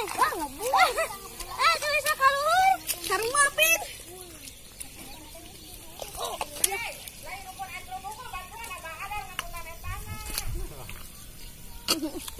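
Children's voices calling out and chattering, loudest in the first few seconds and quieter after.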